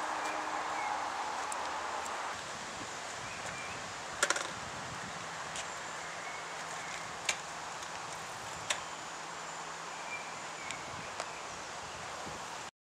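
Outdoor ambience from a camcorder microphone: a steady hiss of breeze and leaves with faint bird chirps. Sharp clicks break in, the loudest a quick triple click about four seconds in, with single clicks later.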